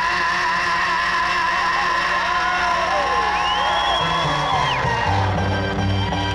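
Live band music: an instrumental passage of held notes that slide up and down in pitch, one climbing high, holding and dropping near the end, over bass and drums.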